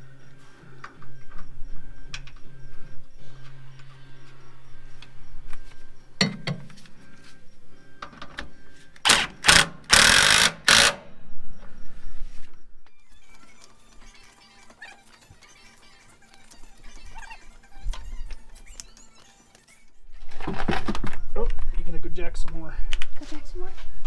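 Background music with steady tones. About nine seconds in, a cordless impact driver runs in three or four short loud bursts, tightening the lower nut of a rear shock absorber. Near the end a louder stretch of mixed sound begins.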